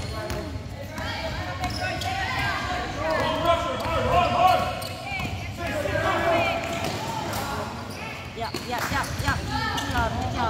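Basketball being dribbled and players running on a gym court, with voices of players and spectators over the top.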